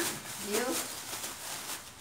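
Thin plastic garbage bag rustling and crinkling as gloved hands shake it open.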